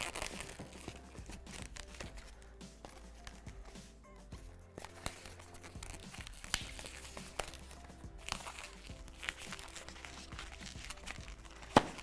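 Long latex twisting balloon rubbing and clicking against the hands as it is twisted and knotted, under faint background music, with one sharp click near the end.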